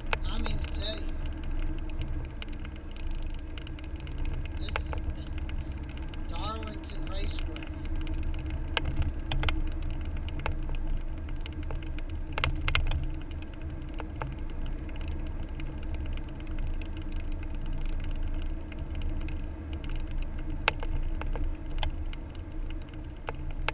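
Car cabin noise heard from a dashcam as the car drives slowly: a steady low rumble of tyres and engine, with scattered sharp clicks and rattles.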